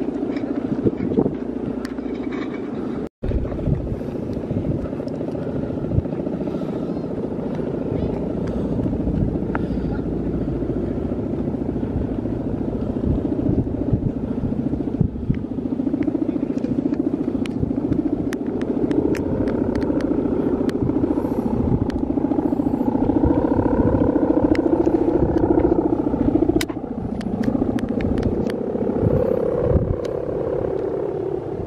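The guangan, the bamboo-bow hummer strung across the top of a big Balinese bebean kite, droning in the wind, its pitch wavering and rising higher about two-thirds through.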